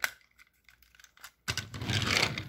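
Plastic toy engine being set down on plastic toy track: a few faint clicks, then a scraping rattle of plastic on plastic in the last half second.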